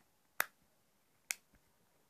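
Two sharp clicks about a second apart from a smartphone being handled in the hand.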